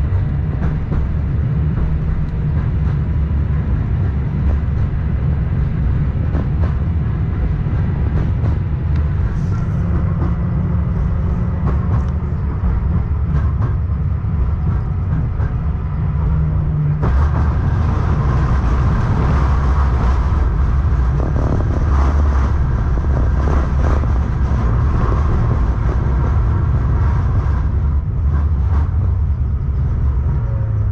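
KTM-19 (71-619KT) tram running, heard from inside the car: a steady low rumble of wheels on rails with a faint motor whine. About seventeen seconds in it grows louder and harsher.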